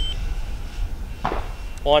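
A steady low rumble, with the tail end of a high electronic beep cutting off at the very start and a man's voice beginning near the end.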